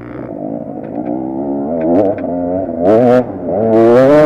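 KTM 250 EXC two-stroke single-cylinder enduro engine revving hard as the bike accelerates up a dirt climb. The pitch rises in steps and dips briefly about three seconds in, then climbs again, louder.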